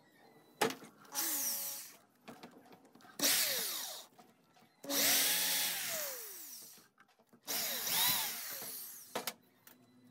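Electric drill boring holes through a washing-machine drum spider made of thick plastic, in four runs of one to two seconds each. The motor's pitch falls away as each run ends.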